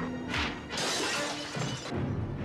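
Movie-trailer soundtrack: music under a short burst and then a longer crashing, shattering sound effect that starts a little under a second in.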